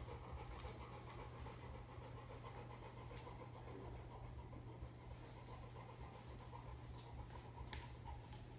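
A dog panting faintly and steadily while it holds a sit-stay.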